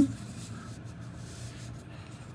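Soft rubbing of a silver half dollar being slid by fingers across a cloth coin mat, over a faint steady low hum.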